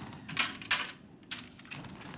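A few sharp clicks and clacks of a tall metal stand being folded and lifted, the two loudest close together about half a second in.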